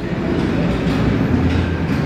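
A loud, steady rumbling noise, deepening a little about halfway through.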